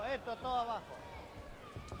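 A man's announcing voice for the first part, then a quieter second of faint background noise with no distinct event.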